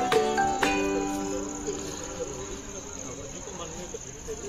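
Crickets chirring in a steady high-pitched drone. Over it, music with a stepped melody is heard clearly in the first second and then fades, leaving faint distant voices.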